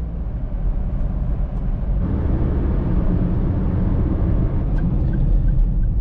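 Steady engine and road noise inside a small 1.3-litre car's cabin while driving: a low, even rumble with tyre hiss over it.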